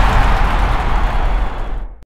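A loud rushing noise with a deep rumble: the tail of the end-card sound effect. It fades and cuts off near the end.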